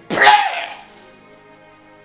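A man's short, loud, breathy vocal burst into a handheld microphone, lasting about half a second at the start, over soft sustained keyboard chords.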